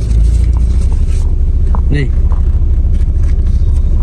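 Steady low rumble of a parked car's engine running, heard inside the cabin.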